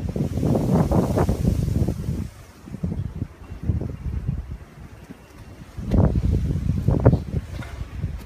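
Wind buffeting the phone's microphone in gusts, loudest over the first two seconds and again from about six seconds in.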